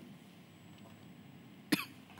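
A man's single short cough near the end, after low room tone.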